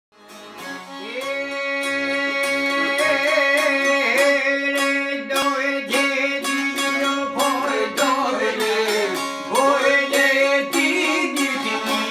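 Instrumental opening of an Albanian folk song on a Hohner piano accordion and two long-necked plucked lutes: the accordion holds steady drone notes while the lutes play a quick, busy plucked melody. It fades in over the first second.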